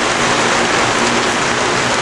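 Steady rain falling, an even hiss with no breaks.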